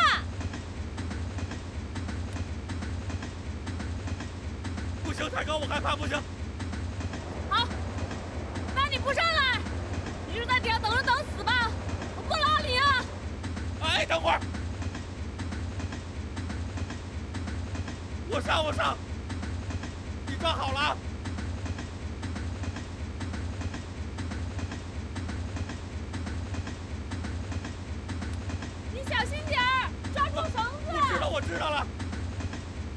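Steady low rumble of a moving passenger train, running without a break under the dialogue.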